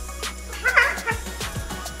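Young green-winged macaw giving a short call a little over half a second in. Sharp clicks come and go around the call while it flaps its soaked feathers beside a running kitchen tap.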